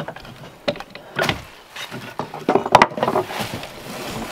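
Drawknife shaving wood on a wooden shaving horse: several short scraping strokes as shavings are pulled off the workpiece, with a couple of sharp wooden clicks about two-thirds of the way in.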